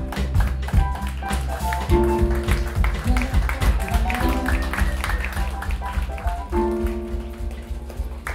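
Live jazz-rock band playing: held keyboard chords that change every couple of seconds over bass guitar and a steady drum-kit beat with cymbal taps.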